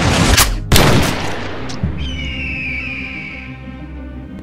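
Film-style gunshot sound effect: a rising swell leads into one loud bang just under a second in, which dies away into a high ringing tone over dramatic music.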